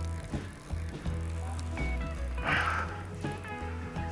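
Background music over a fishing reel being wound in while a hooked pike is played on the rod. A short noisy burst comes about two and a half seconds in.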